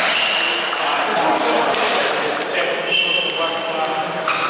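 A table tennis rally: the ball clicks off the bats and the table in quick short knocks, over the chatter and play of a busy hall.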